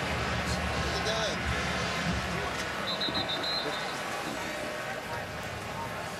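Crowd noise in a football stadium: a large crowd murmuring with scattered shouts. A short run of high-pitched chirps comes about three seconds in.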